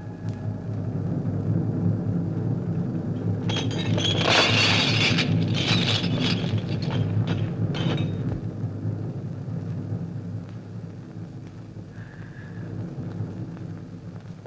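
Elephant rumbling deeply and continuously, with a harsher, louder roaring call from about four to eight seconds in.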